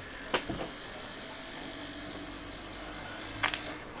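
Faint, steady hum of a car engine on a street, with a sharp click about a third of a second in and another shortly before the end.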